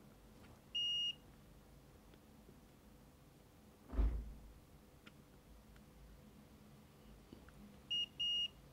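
Digital multimeter's continuity buzzer giving one short, steady high beep about a second in as the probes touch the board's pads, the sign of a connection between the probed points. A short low thump follows a little before halfway.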